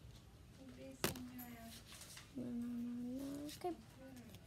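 A single low voice held on one steady note for just over a second in the second half, rising slightly at its end. A sharp click comes about a second in.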